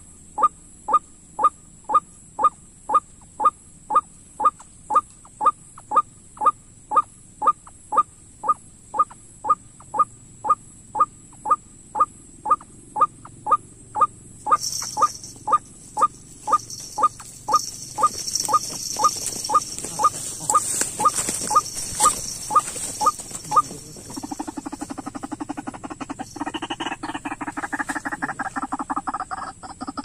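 White-breasted waterhen call note repeated in a very even rhythm, about two loud notes a second. About halfway through, a hiss and rustling join in. Near 24 s the even notes stop and give way to faster, rougher pulsed calling.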